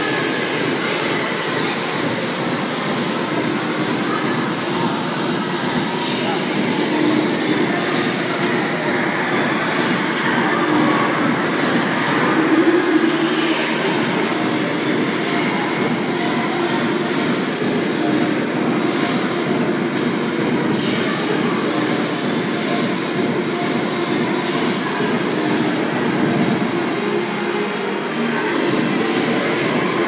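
Steady din of a busy public ice rink: many voices chattering, mixed with the hiss and scrape of skate blades on the ice.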